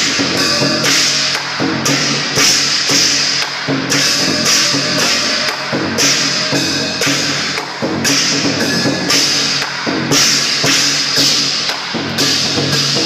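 Chinese lion dance percussion: a large drum beating with cymbals clashing in a steady beat.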